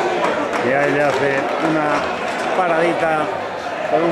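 Men's voices talking, with crowd noise behind.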